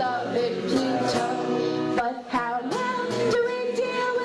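A live folk song: a woman singing with instrumental accompaniment, holding one long note near the end.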